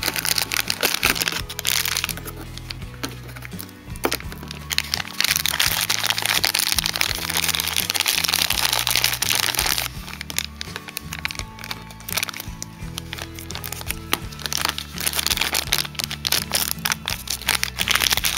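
A shiny plastic blind bag being handled and torn open, with crinkling and crackling in two long spells, over background music.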